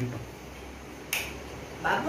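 A single sharp click about a second in, over a low steady hum, in a pause between a man's words.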